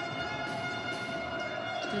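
A steady pitched tone with several overtones, held unchanged throughout over a low arena background noise.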